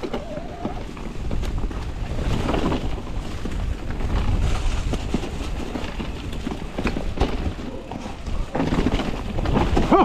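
Mountain bike descending a woodland trail at speed: wind rushing over the handlebar-mounted microphone and tyres rolling through dry leaves, with scattered knocks and rattles as the bike goes over roots and rocks.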